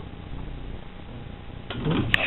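Quiet, even background noise with a faint steady hum; a man starts talking near the end.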